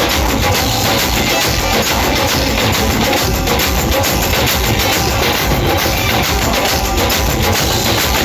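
Live music led by several dhols, double-headed barrel drums beaten with sticks, playing together in a dense, steady rhythm.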